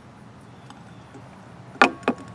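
Faint background hiss, then one sharp click near the end as cut okra pieces or the knife knock against a ceramic plate.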